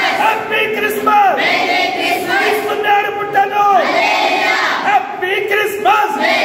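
A group of girls' voices and a man's voice shouting and chanting together in unison, in repeated phrases that each drop in pitch at the end.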